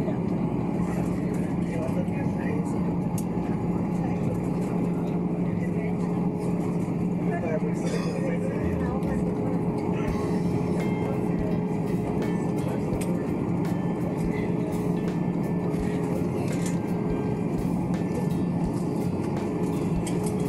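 Airliner cabin noise during the landing rollout of an Airbus A320-family jet: a steady rush and rumble of the aircraft rolling down the runway with its ground spoilers up, over a steady low hum.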